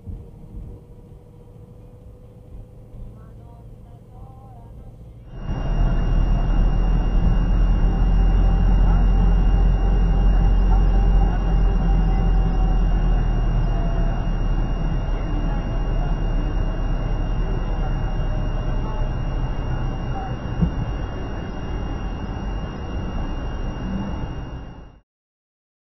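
A car driving, heard through a dashcam's microphone: a loud, steady low rumble of engine and road noise that starts abruptly about five seconds in, after a quieter stretch, with a thin, steady high whine over it.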